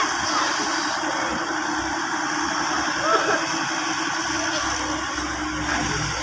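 Hitachi excavator's diesel engine running steadily while digging, with a low rumble building near the end as the loaded bucket is lifted.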